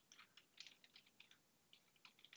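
Faint typing on a computer keyboard: a quick, uneven run of light keystrokes, about a second and a half long.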